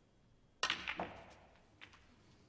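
Snooker shot played into the pack: a sharp knock about half a second in as the cue strikes the cue ball, a second crack a third of a second later as the cue ball splits the cluster of reds, then a faint ball click near the end.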